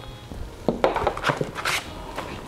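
A few light knocks as a handheld plastic vacuum pump is handled and set down on a table, then a rustle of paper as instruction sheets are picked up.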